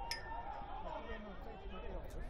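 Faint pitch-side ambience from a football match: distant, indistinct voices of players and spectators over a steady low rumble.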